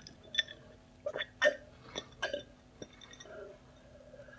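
A person gulping a drink from a glass: about six short, sharp swallows in the first three seconds, close to the microphone.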